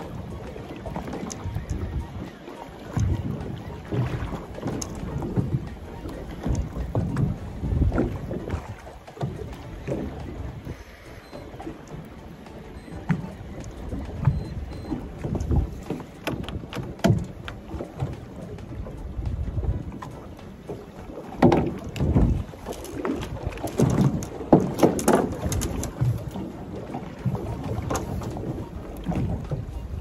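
Wind buffeting the microphone and choppy water slapping the hull of a small boat at sea, an uneven low rumble with scattered knocks and clatters that come thicker in the second half.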